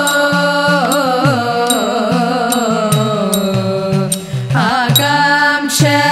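Thiruvathirakali song: a group of women singing a devotional melody, accompanied by an idakka hourglass drum whose strokes bend up and down in pitch.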